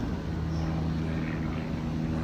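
A steady low mechanical hum made of several even low tones, like an engine or motor running at a constant speed.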